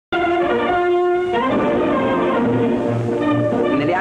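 Orchestral music led by brass, starting abruptly: a held brass chord for about the first second and a half, then a busier passage of shorter notes.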